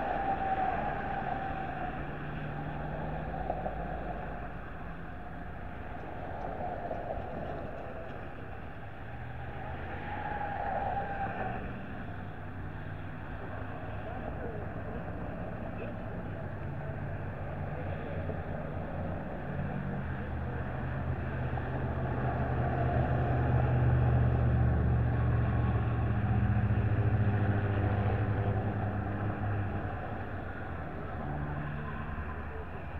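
A vehicle engine running, with indistinct voices now and then. The engine grows louder in the second half and is loudest a few seconds before the end.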